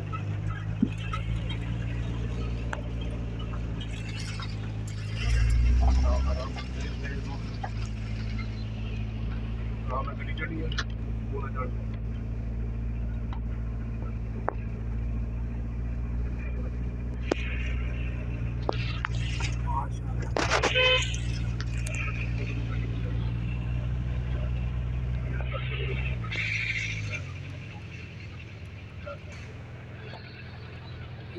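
Car engine running steadily, heard from inside the cabin while driving, with a louder low surge about six seconds in. The engine hum drops away about 27 seconds in.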